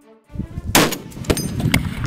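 .50-calibre rifle fired once, a loud sharp report about three-quarters of a second in, followed by a rolling low rumble of echo.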